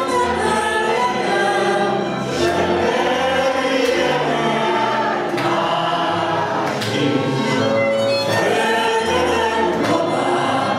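Hungarian nóta sung live by a woman through a microphone, accompanied by a Gypsy band with violin and double bass.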